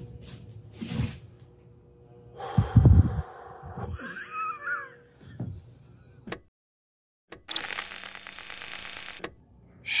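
A man's breathy laughter, coming in soft scattered bursts. About two-thirds of the way in the sound cuts to dead silence, then a steady noise runs for about two seconds.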